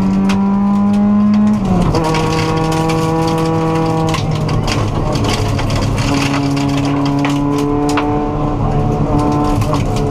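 Subaru WRX rally car's turbocharged flat-four engine under hard throttle, heard from inside the cabin. The revs climb, then drop at an upshift about a second and a half in, and the engine pulls on at steady high revs. Sharp ticks of gravel striking the car run throughout.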